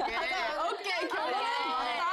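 Speech only: several women talking over one another.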